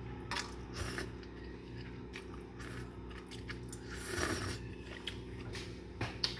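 A person eating instant noodles: slurping and chewing, heard as a string of short, irregular mouth noises.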